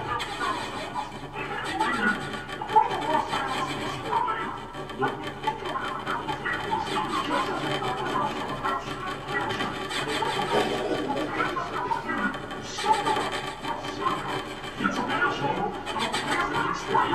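Live free-improvised music from laptop electronics and reed instruments: a dense, shifting texture full of short scratchy and squealing sounds, with snatches that resemble a voice.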